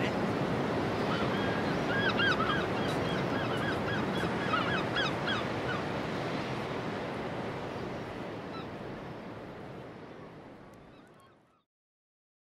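Outdoor ambience: a steady noise haze with a series of short, repeated bird calls, fading out to silence near the end.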